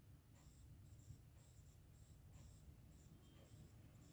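Faint scratching and tapping of a stylus writing on a tablet screen, in short strokes about two a second, over a low steady hum.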